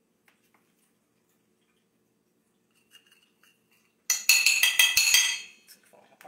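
Pie server and fork clinking and scraping against a plate as a slice of pie is set on it. It starts as a few faint clicks, then about four seconds in comes a rapid clatter lasting about a second.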